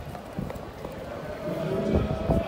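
Footsteps knocking on stone paving in a busy pedestrian street, with voices rising near the end.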